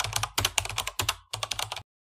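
Computer keyboard typing sound effect: a run of quick keystrokes, several a second, with two short breaks, stopping just before the end.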